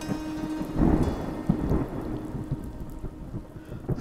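Rumbling thunder with steady rain, a thunderstorm sound effect, swelling about a second in. A faint steady tone sits under it for the first second and a half.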